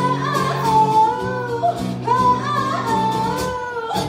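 A woman singing live, holding long notes, over acoustic guitar accompaniment.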